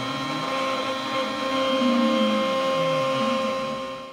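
Trim-router spindle on a Shapeoko 3 CNC running at speed with a steady whine of several tones while its end mill cuts a pocket in an aluminum plate, the pitch of the lower part wavering slightly with the cut. The sound stops abruptly at the very end.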